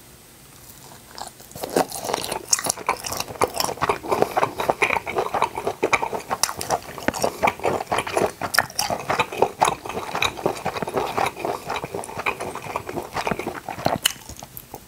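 Close-miked chewing and biting of grilled octopus skewers: a dense run of wet mouth clicks and smacks that starts about two seconds in and goes on almost to the end.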